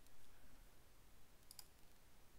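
A single computer mouse click, heard as a quick pair of ticks about one and a half seconds in, against near-silent room tone.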